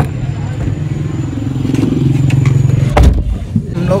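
Car engine idling with a steady low hum, and a car door shut with one loud thump about three seconds in, followed by a smaller knock.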